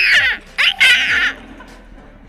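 A group of young women laughing, with two high-pitched squeals of laughter in the first second or so that then die away.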